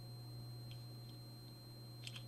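Quiet room tone with a steady electrical hum and a faint high whine, with a few faint light ticks.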